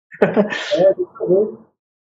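A person's voice: a sudden sharp vocal burst about a fifth of a second in, followed by short voiced sounds for about a second and a half.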